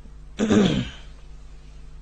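A man clears his throat once, loudly and close to the microphone, just after a quick breath in.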